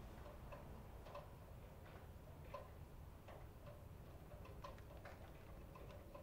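Faint, irregular light clicks and taps of food containers and a small glass bowl being handled on a table while someone picks at food, a tick every half second or so.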